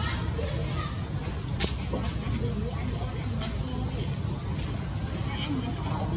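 Indistinct distant human voices over a steady low outdoor rumble, with one sharp click about one and a half seconds in.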